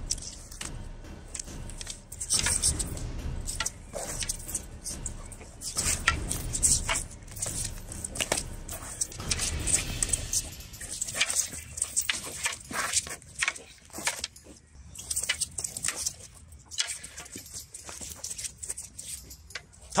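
Practice weapons (sparring swords and long wooden poles) clacking against each other and striking padded armour, in sharp, irregular knocks that come in quick flurries.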